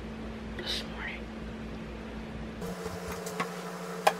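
Steady electrical hum of kitchen background, with a few light clicks and knocks near the end as a cabinet and dishes are handled.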